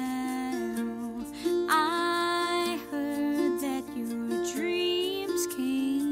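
A woman singing a slow ballad, holding long wavering notes about two seconds in and again near five seconds, over a soft accompaniment of picked mandolin and acoustic guitar.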